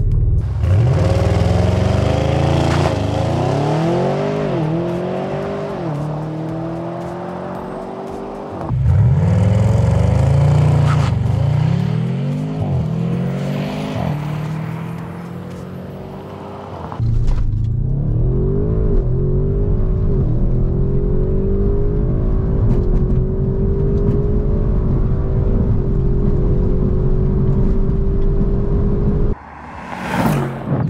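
Audi RS6's 4.0-litre twin-turbo V8, breathing through a Milltek cat-back exhaust, accelerating hard at full throttle. Its revs climb and drop back at each quick upshift, in three cut-together stretches. The last stretch is a long, slow climb in a high gear that stops abruptly near the end.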